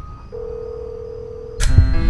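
A single steady electronic tone, one pitch held for about a second and a quarter, in a lull in the music; near the end the music comes back in suddenly with sustained keyboard notes.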